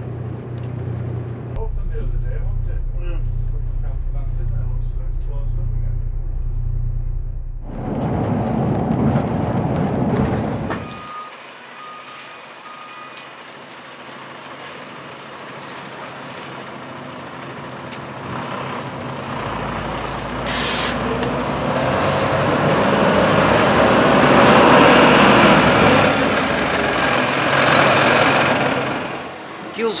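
Coach's diesel engine running as it manoeuvres, with the hiss of air brakes. Loud gusting wind on the microphone swells through the second half.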